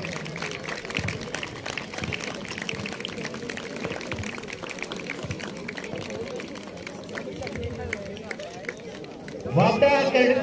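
Footsteps of a large column of cadets marching in trainers on a dirt ground, heard as many irregular soft scuffs and thuds, with voices in the background.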